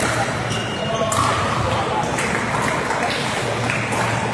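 Pickleball paddles hitting a hard plastic ball during a doubles rally: a few sharp, separate pops that echo in a large sports hall, over a steady background of indistinct voices from the courts.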